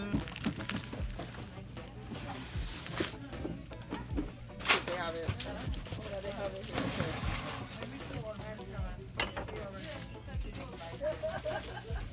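Indistinct background speech and music, with a few sharp knocks and a steady low hum underneath.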